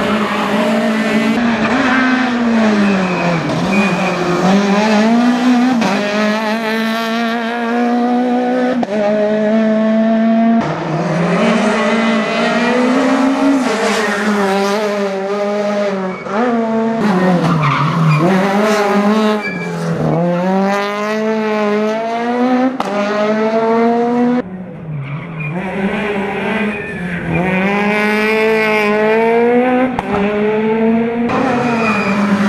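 Peugeot 208 rally car's engine revving hard under acceleration, its pitch climbing through each gear and falling sharply on lifts and downshifts, over several separate passes.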